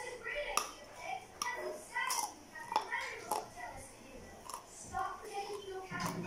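Sharp crunches of a hard, brittle food being bitten and chewed, a handful of separate cracks in the first half, over voices talking in the background.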